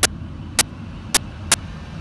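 Steady low rumble of a motor vehicle, with four sharp clicks at roughly half-second intervals.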